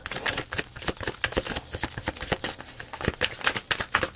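A deck of tarot cards being shuffled by hand: a quick, irregular run of soft card clicks and flicks.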